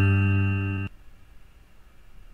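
Karaoke backing music: a held guitar chord fades slightly and then cuts off abruptly about a second in, leaving a faint hiss. It is the close of the instrumental lead-in, just before the sung line starts.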